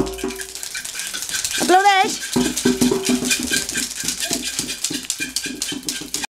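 Children's classroom percussion ensemble: a fast, continuous rattling of shaken percussion, with a struck xylophone or metallophone note at the start and repeated bar notes played from about two seconds in. A short wavering voice-like call sounds just before the bar notes begin.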